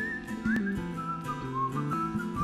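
Background music: a whistled melody over a plucked instrumental backing, the tune moving in short steps and small slides.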